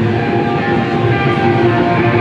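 Live metal band playing loud, with distorted electric guitar over a dense, unbroken wall of sound, recorded close up on a phone in a small venue.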